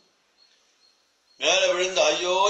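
Near silence in a brief pause for about a second and a half, then a man's voice resumes.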